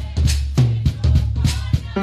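Live band's drum kit and electric bass playing a groove: kick and snare hits several times a second over low bass notes, with the keyboard chords dropped out until right at the end.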